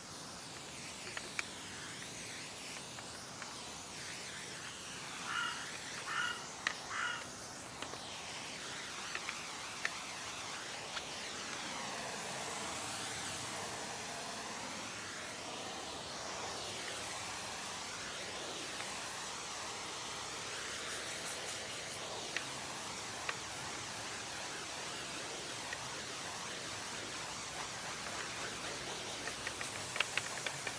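Pressurised pump sprayer hissing steadily as its wand mists traffic film remover onto a car's wheel and lower bodywork, with a few light clicks.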